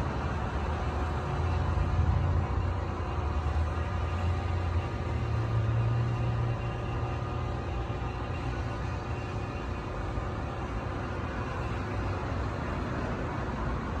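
Road traffic going by: a steady hum of cars with a low rumble that swells and fades every few seconds.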